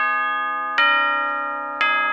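Bell-like chime notes. One is already ringing, and new ones are struck about once a second, each ringing on and slowly fading.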